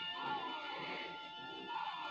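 Music playing quietly from a vinyl record on a turntable, with sustained held notes.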